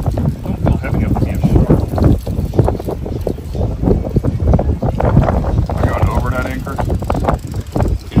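Wind buffeting the microphone in uneven gusts, with indistinct voices in the background.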